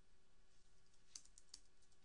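Faint computer keyboard keystrokes: a quick run of a handful of clicks a little past halfway, over a quiet steady hum.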